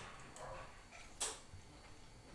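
Quiet room tone with faint sounds of a person eating a bite of pie, and one short click a little over a second in.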